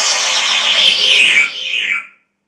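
Electronic synthesizer sounds: a dense layer with a high tone gliding steadily downward, all cut off suddenly near the end.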